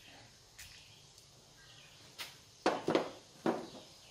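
Small clicks and handling noises as pliers and hands work the nut, washers and rubber grommet off an outboard's fuel filter mounting bracket. A few faint clicks come first, then a cluster of louder knocks about three seconds in.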